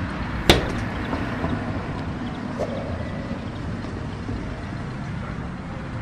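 Steady low rumble of outdoor background noise, like distant traffic, with one sharp crack about half a second in and a fainter knock near the middle.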